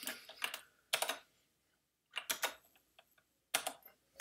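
Computer keyboard keys tapped in about five short, scattered clusters of clicks, the keystrokes that switch the screen from a browser window to a full-screen slide.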